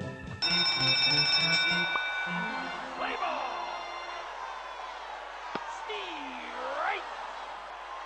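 Video slot game sound effects: a short tune, then a burst of ringing bell-like chimes as the batter bonus feature triggers, followed by a noisy crowd-like backdrop from the baseball animation with a single sharp crack about five and a half seconds in and a swooping pitch glide near the end.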